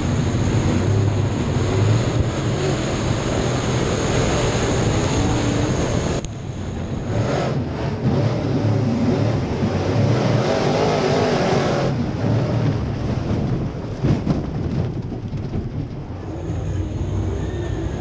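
Super late model dirt race car's V8 engine and chassis noise heard from inside the cockpit, running continuously. The sound changes abruptly about six and twelve seconds in, and a couple of knocks come about fourteen seconds in.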